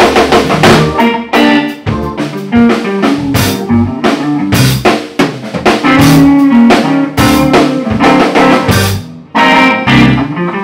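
Live blues band with electric guitar, electric bass and drum kit playing, the drums hitting hard and often. There is a brief drop in the sound about nine seconds in before the full band comes back.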